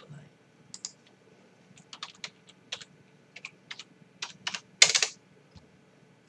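Light, irregular clicks and taps from fingers handling an opened metal pull-tab food tin, with a louder, longer scrape about five seconds in.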